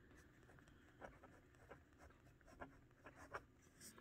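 Faint scratching of a pen writing on lined notebook paper, in a few short, separate strokes.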